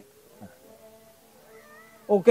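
Faint, drawn-out animal calls, meow-like: one falls in pitch about half a second in, and others rise near the end.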